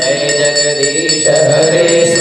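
A man chanting a Hindu devotional chant in long melodic phrases into a microphone, heard through a PA loudspeaker.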